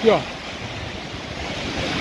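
Small waves breaking and washing up onto a sandy beach at the water's edge, a steady rush of surf.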